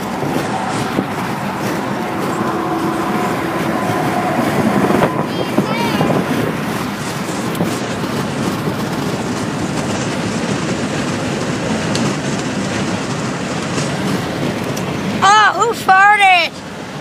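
Steady road and engine noise of a moving car, heard from inside the cabin, with a short burst of a boy's voice near the end.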